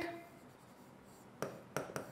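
Pen stylus writing on an interactive whiteboard screen, with three light clicks in the second half as it taps and strokes against the glass.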